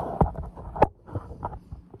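Handling noise from a phone camera being moved about against metal: rubbing with a few sharp knocks, the loudest a little under a second in.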